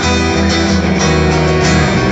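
Live band playing loudly, guitar to the fore, with no singing.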